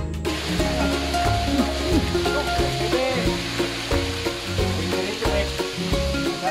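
Background music with a steady, repeating bass line, over an even hiss that comes in just after the start.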